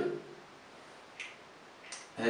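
Marker pen stroking on a whiteboard: two short, faint scratches, one about a second in and one near the end.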